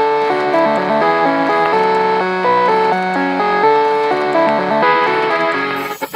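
Background instrumental music: a melody of held notes changing every half second or so, with no singing.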